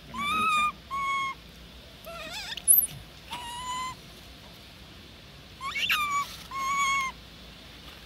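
Long-tailed macaque giving a series of about six short, high, clear coo calls, one wavering and one sweeping sharply up and down, with a brief shrill squeak a little under three seconds in.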